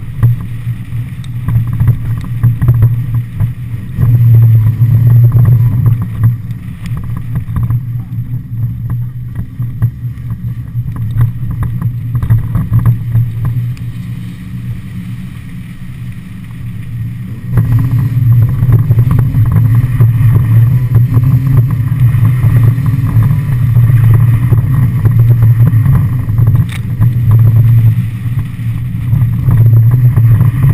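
Mazda Miata's stock 1.6-litre four-cylinder engine running hard as the car is drifted, its note swelling and falling with the throttle; it gets louder about four seconds in and again about halfway through, and stays loud to the end.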